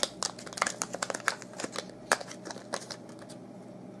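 Quick, irregular plastic clicks and rattles of a small USB flash drive being handled and put back in its clear plastic pack; the clicking thins out about three seconds in.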